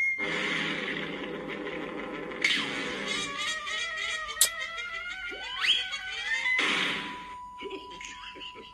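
Cartoon soundtrack playing from a tablet: music with sound effects. A rising glide comes about five and a half seconds in, and there are two short bursts of hiss, one near the middle and one past it.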